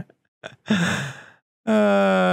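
A man's breathy laugh, a short exhale through a smile. Near the end a voice starts one long, steady held note.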